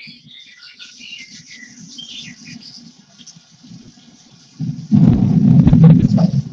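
Recorded ambient soundscape from the deepfocus.io website played through computer speakers: birds chirping over a faint hiss of rain, then, about four and a half seconds in, a loud rumble of thunder swells up and carries on to the end.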